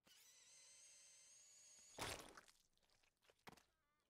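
A faint steady electronic hum, then about halfway through one short wet splat as an animated robot smashes an orange into its face, followed by a few faint clicks.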